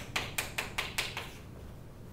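Chalk writing on a chalkboard: a quick run of about seven sharp taps and strokes over the first second or so, then it stops.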